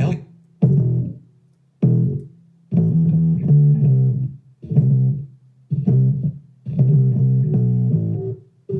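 Preview of an electric bass line loop in E minor at 118 BPM, tagged disco and funk: low bass notes in short phrases with brief gaps between them.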